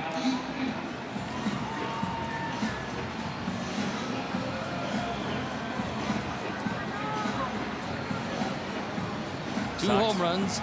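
Ballpark crowd hubbub at a steady level, with music playing over the stadium speakers.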